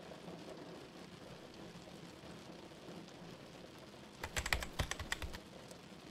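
Computer keyboard typing sound effect over a faint background hiss, with a quick run of key clicks about four seconds in.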